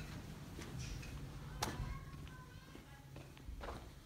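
Soft footsteps and a few light knocks over a low steady room hum, with faint voices or music in the distance.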